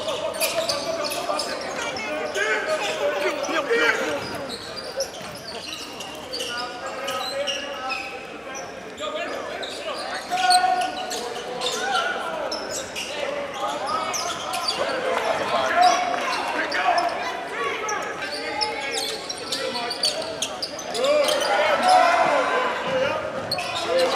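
Basketball game sound in a gymnasium: the ball bouncing on the hardwood court with players and onlookers calling out indistinctly, all echoing in the large hall.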